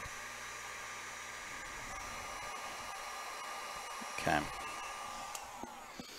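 Heat gun running steadily, its fan blowing with a thin, steady whine, as it heats the phone's screen to soften the glass adhesive. Near the end the whine slides down in pitch as the gun winds down.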